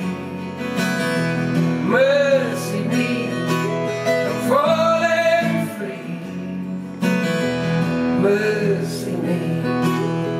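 Acoustic guitar strummed in steady chords, with a singing voice in three short wordless phrases over it. A harder strum about seven seconds in makes the guitar louder.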